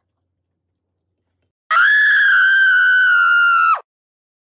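A child's high-pitched scream, dropped in as a sound effect: one loud cry that starts abruptly, is held at a near-steady pitch for about two seconds with a slight fall, and cuts off with a quick downward slide.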